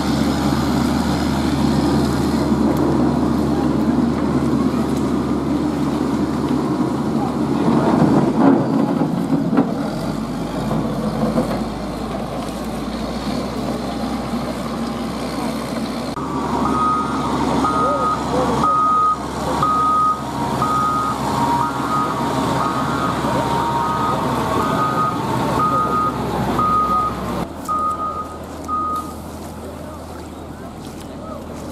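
Diesel engine of a heavy earthmoving machine running, with its reversing alarm beeping steadily, a little faster than once a second, from about halfway in until near the end, as the machine backs up while clearing flood mud from the road.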